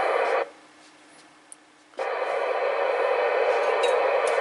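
Open-squelch FM receiver hiss from a Yaesu FT-991A's speaker, a steady rushing static with no signal on the channel. It cuts out about half a second in and comes back suddenly a second and a half later.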